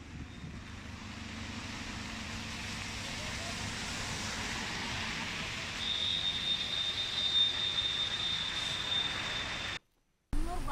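Traffic noise from trucks and cars jammed on a rain-soaked highway: a steady hiss over a low engine hum. A thin, steady high-pitched tone joins about six seconds in, and the sound cuts off just before the end.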